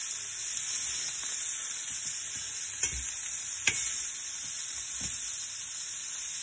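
Pork ribs frying in an oval stainless steel pan: a steady sizzle, with a few sharp pops of spitting fat, the loudest about three and a half seconds in.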